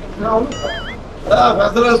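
Men's voices talking close by. About half a second in comes a short high wavering call that rises, dips and rises again.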